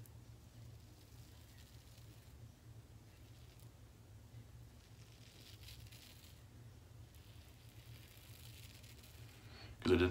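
Faint scratching of a Blackland Vector single-edge razor with a Feather ProSuper blade cutting stubble through lather on the neck, in a few short strokes, over a steady low hum. The blade is one the shaver thinks is near the end of its life.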